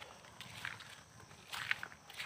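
A ladle stirring rice in a pan, giving a few faint scrapes and rustles as the grains are dry-roasted.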